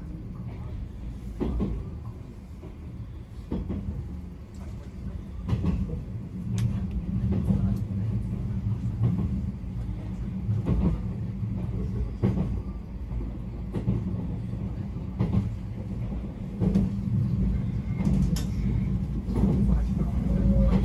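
Izukyu 2100 series electric train running, heard inside the front car: a steady low rumble with sharp clacks and knocks from the wheels on the track every second or two.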